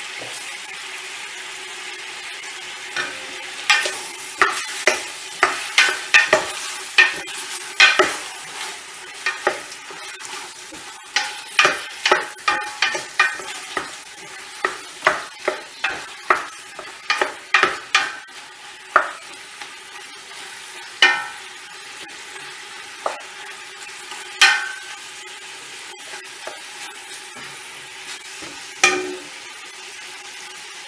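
Veal pieces sizzling as they sear in hot margarine in a large stainless steel pot, while a wooden spoon stirs them and knocks and scrapes against the pot. The knocks come in a quick, steady run through the first two thirds, then only a few spaced ones over the steady sizzle.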